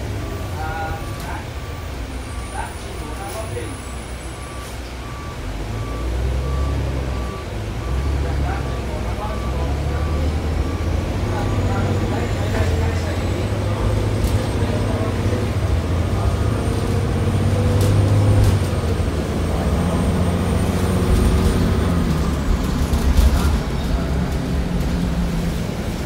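Cummins ISM diesel engine of a 2000 Neoplan AN440A transit bus, heard from inside the cabin, pulling the bus along; from about five seconds in its low note climbs in steps and grows louder as it accelerates through the gears. A repeated beep sounds in the first few seconds, and a faint high whine rises and holds through most of the second half.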